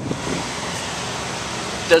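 A steady, even hiss.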